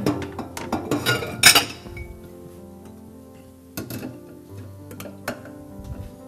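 Kitchenware clinking and knocking: a quick run of sharp clinks in the first second and a half, the loudest about a second and a half in, then a few scattered knocks, over steady background music.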